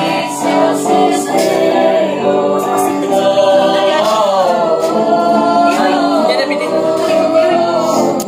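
A group of young men and women singing a song together loudly, several voices at once holding and bending long notes, with a few sharp percussive taps in the background.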